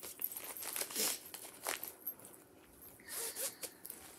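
A zippered fabric project pouch and its paper chart being handled: rustling, small clicks and a zipper being pulled, busiest in the first two seconds.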